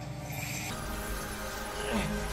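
Quiet dramatic background music from a TV drama's score cuts in under a second in, with a low rumble beneath it.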